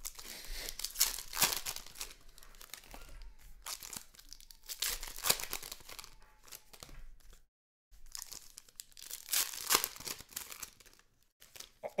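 Trading cards and their plastic pack wrappers being handled by hand: irregular crinkling and rustling with sharp crackles, cutting out completely for a moment a little past halfway.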